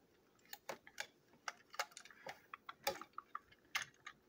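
Faint, irregular light clicks and taps of two plastic toy train engines being handled and knocked against each other in the hand, starting about half a second in.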